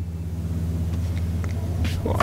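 BMW 330i straight-six engine pulling in first gear, heard from inside the cabin as a steady low drone.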